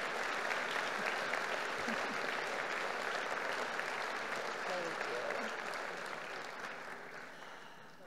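Audience applauding in a hall, steady at first and dying away over the last two seconds.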